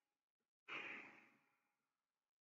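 A man's short sigh, a single breath out that starts suddenly about two-thirds of a second in and fades away within about half a second.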